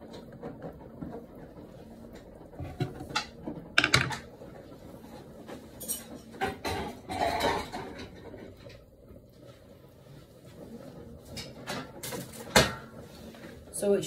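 Kitchen clatter: scattered knocks and clinks of pots, pans and utensils, with the loudest single sharp knock near the end.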